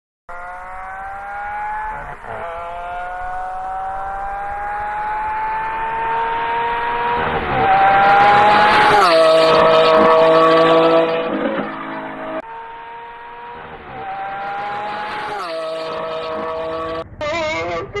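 A high-revving car engine accelerating hard, its pitch climbing steadily with brief drops at gear changes, then loudest as it passes about eight seconds in, with the pitch falling away. After a cut, a second run-up climbs and falls again before the sound changes near the end.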